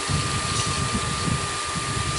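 48 V 1500 W brushless DC motor spinning with no load on the shaft, running smoothly with a steady high whine over a low hum.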